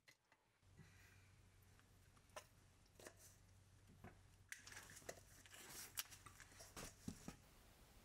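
Faint handling noises as the wooden mousetrap board is set down on the barn floor: a few scattered light clicks, then a cluster of clicks and rustling in the second half, over a faint low hum.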